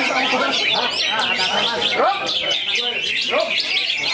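Dense birdsong from a caged cucak hijau (green leafbird) singing among other songbirds: rapid, overlapping high chirps and sliding whistles, with people's voices underneath.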